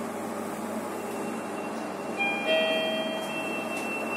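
Sigma lift arrival chime: a two-note electronic ding about two seconds in, its tones ringing on, as the car reaches its floor. Under it is the steady hum inside the lift car.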